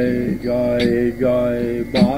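Devotional kirtan singing: a voice chanting a melodic line in long held notes with short breaks between phrases.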